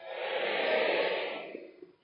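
A large audience calling back a greeting together, the customary AA reply 'Hi, Katie': a swell of many voices that rises and fades away over about a second and a half.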